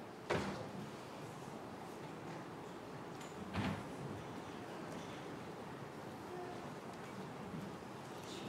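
Quiet room tone in a large room, a steady faint hiss, broken by two brief soft sounds, one just after the start and another about three and a half seconds in.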